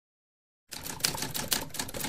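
Typewriter sound effect: a rapid clatter of key strikes, with a few louder ones among them, starting abruptly out of silence about two-thirds of a second in.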